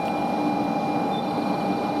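Steady hum and noise of a 500 Series Shinkansen train beside a station platform, with a faint low steady tone.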